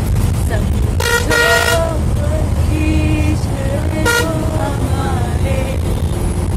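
A bus engine runs steadily with a low rumble while it drives. Its horn sounds about a second in, held for under a second, and again briefly about four seconds in.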